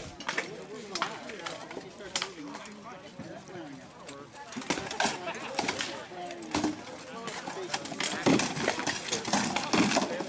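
Rattan weapons knocking on shields and armour in SCA armoured combat: scattered sharp knocks, then a quick flurry of strikes in the last two seconds as the fighters close. Voices murmur faintly in the background.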